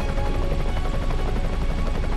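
Helicopter in flight, its rotor and engine running steadily, with background music.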